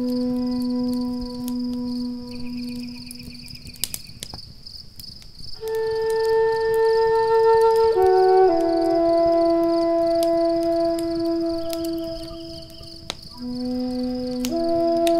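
Native American flute playing slow, long held notes, with a short break about four seconds in before a higher phrase that steps down and holds. Under it, a steady high chirping like crickets runs throughout, with scattered sharp crackles of a wood fire.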